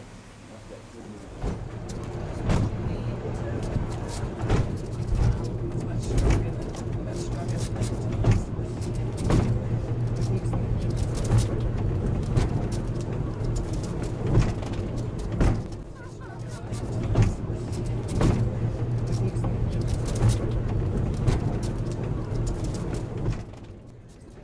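Historic cable-hauled funicular car running up its track, heard from on board: a steady low hum with a regular knock about once a second.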